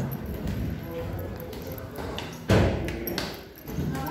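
Footsteps going down stairs, with a loud thump about two and a half seconds in and a smaller one just after, under faint voices.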